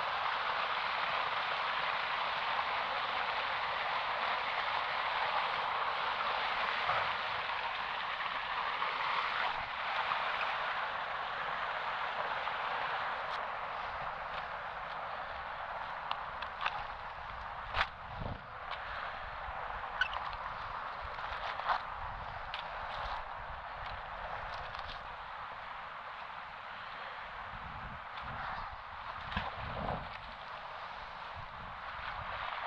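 Steady rush of fast-flowing river water that slowly fades, with scattered crackles and clicks of footsteps on dry leaves and grass in the second half.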